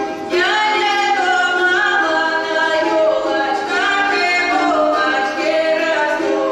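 Dance music led by several female voices singing together, each phrase sliding up into long held notes; the singing comes in about a third of a second in.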